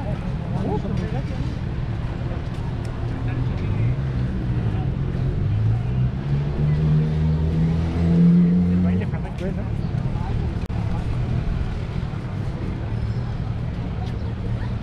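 A motor vehicle on the road beside the promenade accelerating past, its engine note rising from about four seconds in, loudest near eight seconds and fading after nine, over a steady low rumble of traffic and wind. Passers-by's voices are faintly heard.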